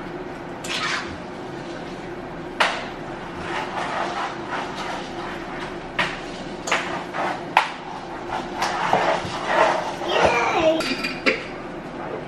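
Kitchen utensils and cookware knocking and clinking at a stovetop pot while cooking: a string of sharp, separate taps and clinks, over a steady low hum.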